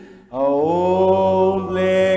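A man singing a slow hymn into a microphone: a short breath about a quarter second in, then a long note that slides up into place and is held, wavering near the end.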